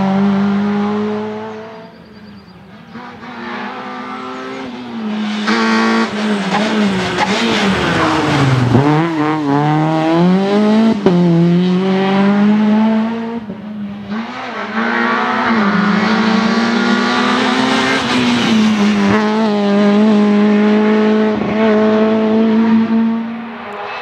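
Škoda Fabia R2 rally car's 1.6-litre four-cylinder engine running at high revs over several passes. The pitch stays high and steady for long stretches, then falls and climbs back about halfway through; the sound drops away briefly near two seconds and again around fourteen seconds.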